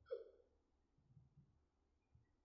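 A single short vocal sound from a person just after the start, such as a hiccup or stifled giggle, then near silence.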